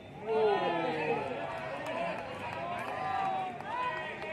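Several people shouting and talking over one another, their voices overlapping loudly throughout.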